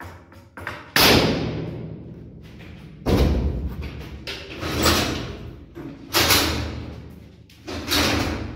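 About five loud bangs a second or two apart, each ringing out in a bare concrete room: impacts from building work on the wall and ceiling.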